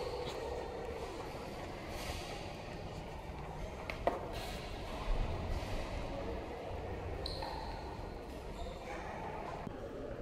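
Room sound of a large, echoing church interior, with a faint murmur of distant voices. A sharp click comes about four seconds in, and a few soft thumps follow about a second later.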